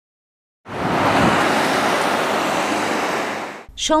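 Road traffic noise: a steady hiss of cars passing close on a busy road. It cuts in abruptly about half a second in and fades near the end, where a voice starts speaking.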